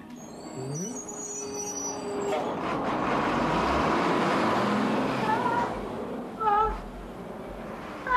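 City street traffic with a truck driving past, its noise swelling and then fading over a few seconds. Near the end, two short, high, wavering cries.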